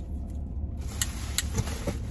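Steady low hum inside a parked car's cabin, with a few sharp plastic clicks about a second in as a clip-on neck light and its clip are handled.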